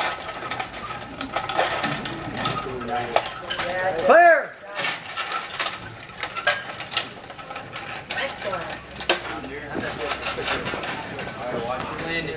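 Metal chains, swivel hooks and carabiners of hanging grip handles clinking and knocking as a climber swings along them, in a quick irregular run of sharp clicks. About four seconds in comes one short, loud cry that rises and falls in pitch.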